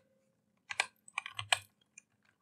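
Computer keyboard being typed on: a few keystrokes in short bursts, starting a little under a second in.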